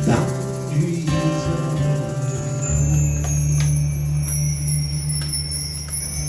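Acoustic guitar holding a low, steady chord while bar chimes (a mark tree) are run, adding a high shimmer from about two seconds in.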